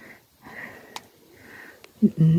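A person breathing close to a phone microphone: two soft breaths, with a couple of faint clicks from the phone being handled.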